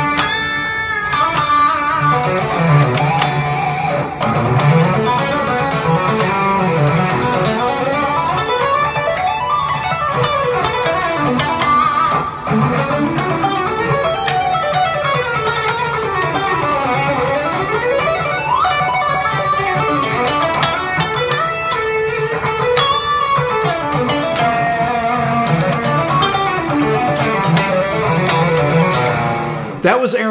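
Electric guitar playing fast, flowing melodic runs whose pitch sweeps up and down, over a steady low note.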